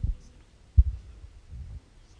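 A few low, dull thumps on a handheld microphone, the strongest a little under a second in.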